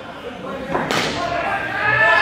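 Indoor cricket bat striking the ball: one sharp crack about a second in, with a short echo in the large hall, over players' voices.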